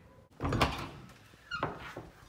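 A pair of interior doors flung open with a sudden loud bang about half a second in, which fades away. A shorter knock with a brief squeak follows near the end.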